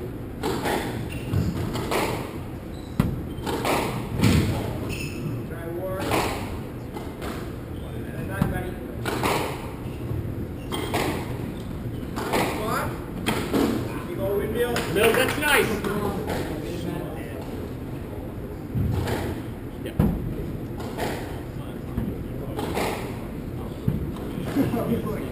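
Squash rally: a run of sharp knocks as racquets strike the ball and it hits the court walls, coming every second or so.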